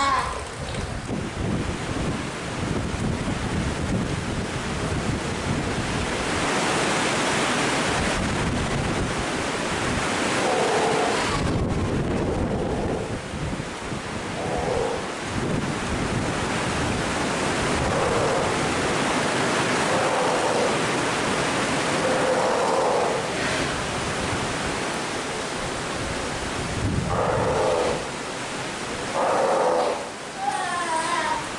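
Steller sea lion pup calling in several short, pitched bleats from about ten seconds in, over a steady rush of splashing water.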